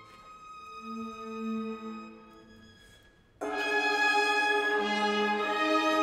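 Symphony orchestra playing: soft held notes that fade away, then about three and a half seconds in the full orchestra comes in suddenly and loudly, with violins to the fore, and holds sustained chords.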